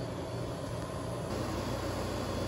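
Steady low mechanical hum under an even hiss, like a motor or fan running in the background.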